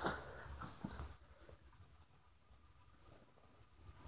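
Near silence: room tone, with a few faint short sounds in the first second.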